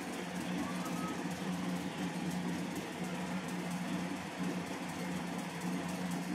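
Television sound recorded off the set: a steady low hum and hiss, with the DVD preview's program audio muffled underneath.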